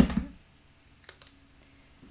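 A plastic tape-runner adhesive dispenser set down on a table with a single sharp clack, followed about a second later by a few faint light clicks.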